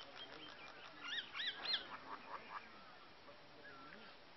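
Birds chirping and calling, with a quick run of three louder, arched calls a little over a second in.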